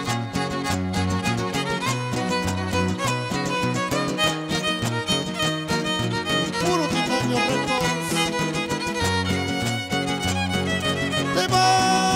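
Instrumental break of a huasteco trio: a violin carries the melody over strummed jarana and huapanguera, the huapanguera giving a stepping bass line.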